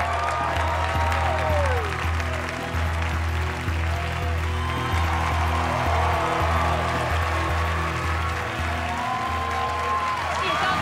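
Studio audience applauding over a music track with a steady, repeating bass line.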